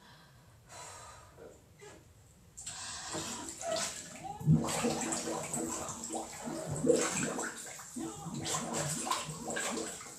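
Water sloshing and splashing in a tub or basin, starting about two and a half seconds in, with a muffled voice sounding through the water.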